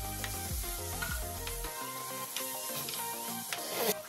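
Chopped tomato and onion sizzling in oil in an earthenware pot, a steel spoon stirring and scraping against the clay, over background music.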